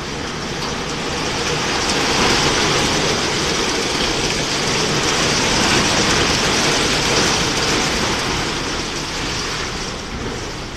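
Rollover car wash gantry with its side brushes spinning and scrubbing a car, a steady rushing, swishing noise that grows louder over the first couple of seconds and eases off near the end.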